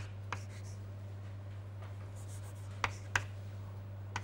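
Chalk writing on a chalkboard: a few sharp taps as the chalk strikes the board, one just after the start and two in quick succession near the end, with faint scratching between. A steady low hum runs underneath.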